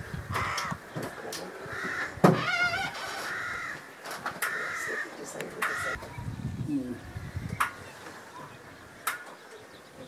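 Harsh, repeated bird calls, about half a dozen short calls in the first six seconds with one louder, wavering call a little after two seconds, mixed with a few sharp clicks.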